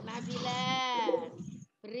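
A person's drawn-out, sing-song voice, rising and then falling in pitch for about a second before it trails off, heard over a video call.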